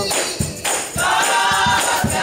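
Church choir singing a gospel song with a tambourine shaking in time over a steady beat; the voices drop back for a moment and come in strongly again about a second in.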